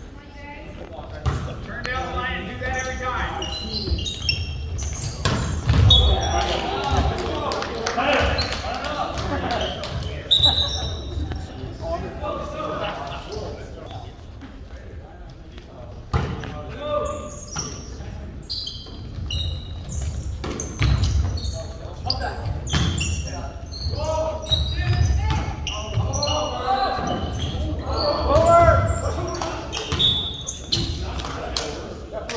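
Volleyball match in a school gym: sharp slaps of the ball being served, hit and bouncing off the hardwood, mixed with shouting players and spectators and a few short high squeaks, all echoing in the hall.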